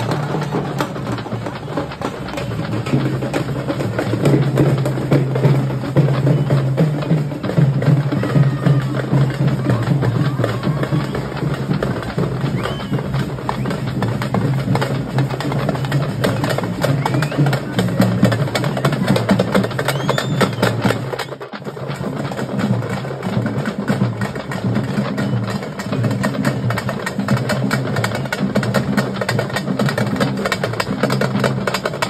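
Drums of a street procession drum troupe beaten in a fast, continuous rhythm, breaking off for a moment about two-thirds of the way through and then going on.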